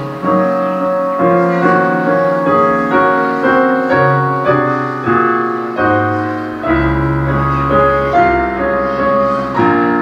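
Roland digital piano played solo: a slow passage of held chords, with a new chord or note struck every half second to second. A deep bass note enters about seven seconds in.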